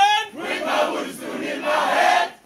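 A group of adult voices chanting a line together in unison, the answer in a call-and-response song, coming right after one leading voice stops. The group rises in two loud swells, near the start and near the end.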